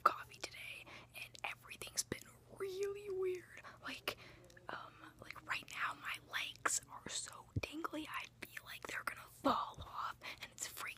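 One person whispering rapidly and breathily close to the phone's microphone, in quick hissing bursts, with a short voiced note about three seconds in.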